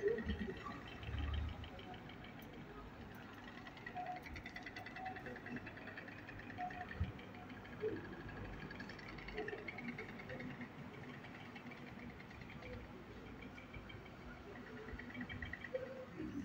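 Faint outdoor street ambience: a low rumble of wind and traffic noise with faint, steady chirring of insects and a soft thump about a second in.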